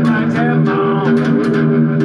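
Slide blues on a one-string diddley bow with a can resonator: plucked notes that glide up and down in pitch under the slide, over a steady low ringing note.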